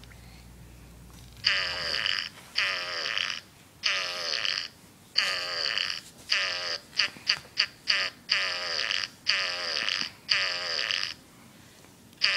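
Imitation fart noises for a doll: about ten buzzy, pitched farts, each sliding down in pitch, with a rapid string of short little toots in the middle.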